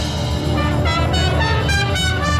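Marching band playing: brass and saxophones sounding a run of changing notes over a steady low bass from the sousaphones.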